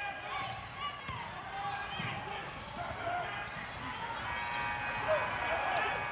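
Basketball being dribbled on a hardwood gym floor, with a few low bounces standing out, under the shouts and calls of players and spectators.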